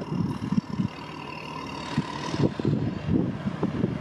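A motor engine running with an uneven low rumble and a faint steady whine.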